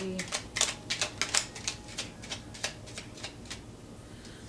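Tarot cards being shuffled by hand: a quick, uneven run of crisp papery taps and snaps lasting about three seconds.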